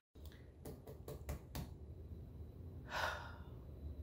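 A few faint clicks, then a woman's sigh about three seconds in.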